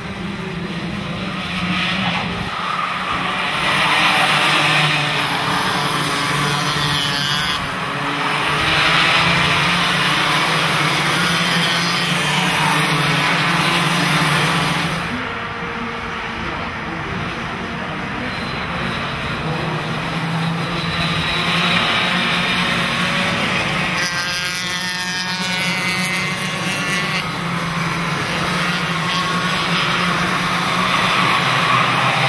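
Several two-stroke racing kart engines running at speed, swelling and easing as the karts pass. About three-quarters of the way through, one engine rises in pitch as it accelerates.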